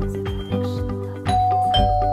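Electronic doorbell chime sounding a two-note ding-dong over background music: a higher note a little past halfway through, then a lower note, both ringing on.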